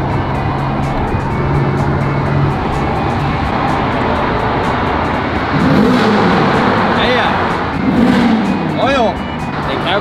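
Ferrari's petrol engine heard from inside the cabin while driving through a road tunnel, the tunnel's echo around it. It holds a steady note at first, then is revved hard, the pitch climbing and falling several times in the second half.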